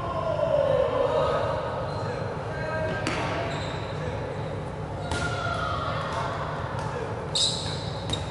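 Dodgeballs striking the wooden floor and players in a large sports hall, with distinct impacts about three seconds in, about five seconds in and again near the end, over players' shouts.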